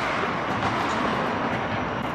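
Steady rushing background noise, even throughout, with no engine note and no distinct knocks or clicks.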